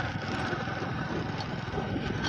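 Motorcycle engine running steadily at cruising speed, with wind noise on the microphone.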